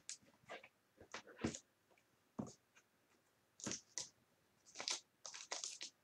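Faint, scattered crinkles and clicks of a trading card in a clear plastic holder being handled, about a dozen short separate sounds.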